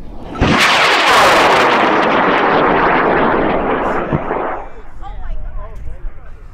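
High-power rocket's solid-fuel motor igniting with a sudden onset about half a second in and burning with a loud rushing noise for about four seconds as the rocket lifts off, fading as it climbs away. Onlookers' voices follow near the end.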